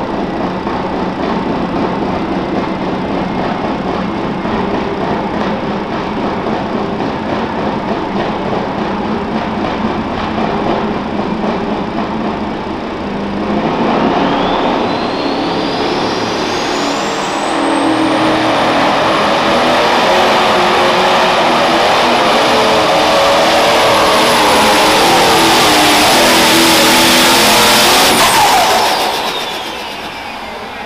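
Turbocharged diesel engine of a Pro Stock pulling tractor (Massey Ferguson 2805 body) running at the start line, then rising to full power a little before halfway. Its turbo whine climbs to a high steady whistle and holds for about ten seconds under the load of the pull. Near the end the engine drops off and the whistle glides back down.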